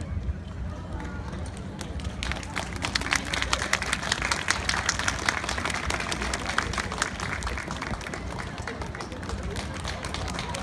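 Audience applause, the clapping building up about two seconds in and carrying on steadily, with crowd voices mixed in.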